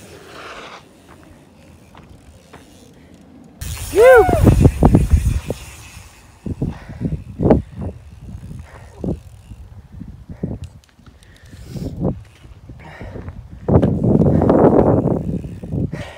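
Mountain bikes on a dirt jump line. About three and a half seconds in the sound comes in suddenly with a short rising-and-falling pitched sound, followed by a string of clicks and knocks from the bikes. Near the end there is a louder rush of tyres on dirt as a rider passes close.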